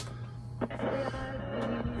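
Music playing from a vintage Emerson AM/FM clock radio's small built-in speaker over a steady low hum, with a click right at the start as it is switched on. The sound shows the radio works.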